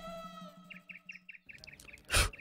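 A held tone fades out in the first half second. Then a small bird chirps in a quick run of short, high chirps, about seven a second.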